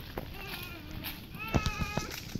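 A small child's high-pitched wordless calls, a short one about half a second in and a longer one near the end, with a few sharp footstep knocks on the paved path.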